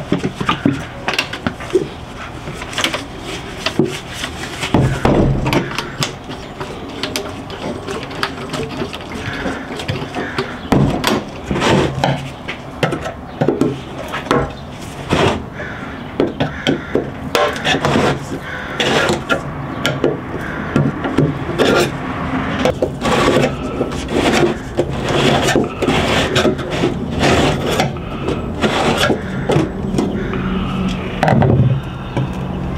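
Hand work on metal parts: gloved hands rubbing and handling a metal brake part, then a screwdriver knocking and scraping at the lid of a paint can, in a long irregular run of knocks, taps and scrapes.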